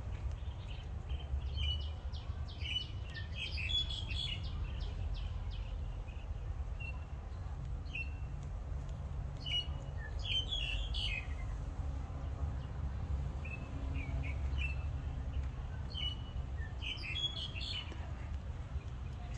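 Birds chirping in short, high notes that come in three spells with pauses between, over a steady low rumble.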